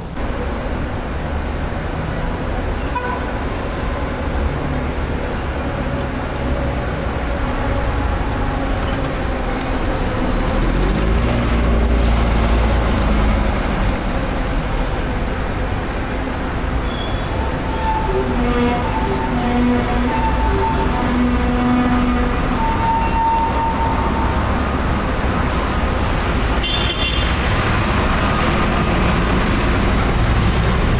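City street traffic: cars and a city bus running past at an intersection, a steady deep engine rumble that swells loudest about halfway through.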